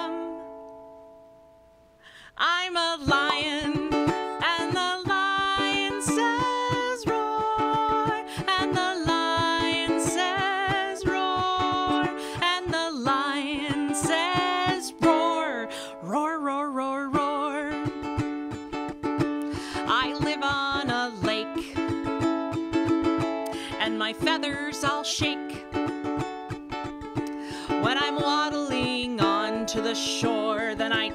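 Ukulele strummed while a woman sings a children's song. A chord rings out and fades over the first two seconds, then the strumming and singing start again and carry on.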